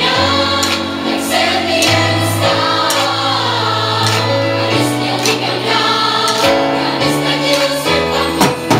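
A song with choir-like singing over held chords plays loudly, with an acoustic drum kit played along to it: drum and cymbal hits cut through the recording at intervals.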